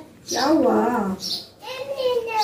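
A young child's high-pitched voice vocalizing in two short stretches, the second starting about three-quarters of a second after the first ends.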